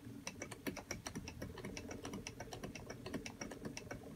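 Wooden treadle spinning wheel running as wool is spun onto the flyer bobbin. The wheel gives a quick train of light, irregular clicks, several a second, over a low steady whir.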